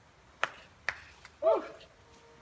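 Two sharp slaps of a climber's hand on a sandstone boulder, about half a second apart, as she makes slapping moves up the problem. A short shout of "yeah" follows.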